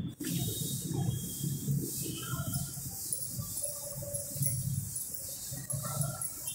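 A chalkboard duster rubbing back and forth across a chalkboard, wiping off chalk writing, in repeated strokes about two a second.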